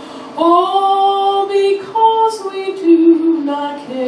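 A woman singing a hymn solo into a handheld microphone, starting a new sung phrase about half a second in after a short breath, moving through several held notes.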